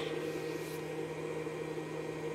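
Steady machine hum over an even hiss, unchanging throughout, from a running motor or appliance.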